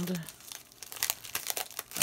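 Packaging crinkling and rustling in irregular crackles as it is handled and opened.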